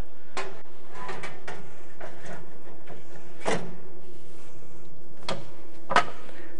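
A baking tray going into a hot wall oven: scattered clicks and knocks of the tray and door, with the oven door shutting in the loudest knock about three and a half seconds in. A couple of sharp clicks near the end as the oven's controls are set.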